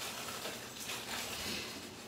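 Soft rustling and handling of a paper flour bag.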